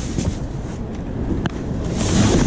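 Steady low rumble of wind on the microphone and street traffic while a cardboard box of groceries is lifted out of a car's trunk, with one sharp knock about one and a half seconds in.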